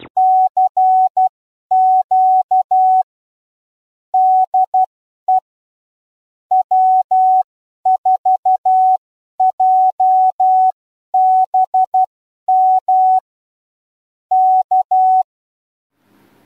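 Morse code sent as a single steady mid-pitched beep tone, keyed on and off in short and long elements grouped with longer pauses between characters.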